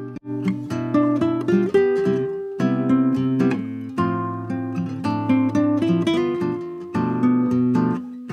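Two acoustic guitars playing a picked melody over chords, from a raw, unprocessed bedroom recording. A brief dropout just after the start, then steady playing with regular plucked notes.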